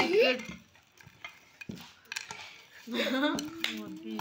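Tableware clinking and tapping in a run of short, sharp clicks, with brief voices at the start and again from about three seconds in.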